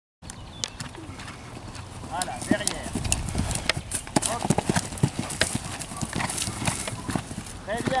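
Hoofbeats of a horse cantering on grass turf: an irregular run of dull thuds as it gallops up to and jumps a cross-country fence. A voice speaks briefly near the end.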